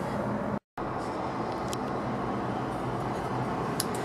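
Steady low background hiss and hum, with a brief total dropout about half a second in and one or two faint clicks.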